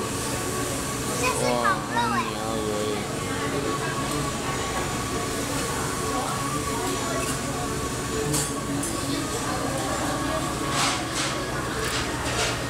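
Restaurant room noise: a steady low hum with a faint high tone running through it. Voices come in about a second in, and a few sharp clicks or clatters sound near the end.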